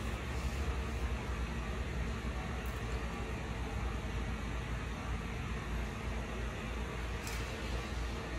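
Steady room tone: a continuous low rumble with a faint hiss, like ventilation or air-conditioning noise, with no distinct events.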